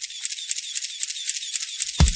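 Opening of a music track with only the high end playing: a steady, quick ticking of hi-hat or shaker-like percussion with no bass, starting suddenly. Right at the end the full beat with a deep kick drum comes in.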